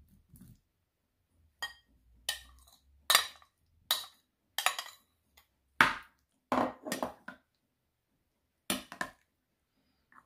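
Metal spoon clinking and scraping against ceramic bowls as fruit cocktail is spooned out of one bowl and stirred into a creamy mix. About ten sharp, irregular clinks, some ringing briefly, with short quiet gaps between them.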